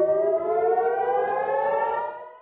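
Civil-defence air-raid warning siren sounding, one tone rising slowly and steadily in pitch.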